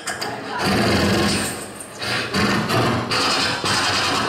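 Solo beatboxing into a cupped handheld microphone through a PA: vocal bass tones and hissy percussive noises in phrases of a second or so, starting about half a second in.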